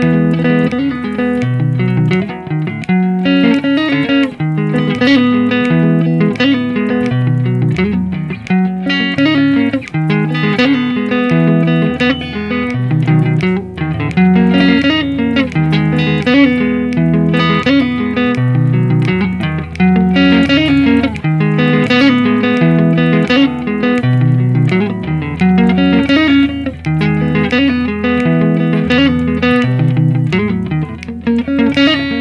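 Squier Stratocaster electric guitar played clean, running a fast single-note riff over and over without a break.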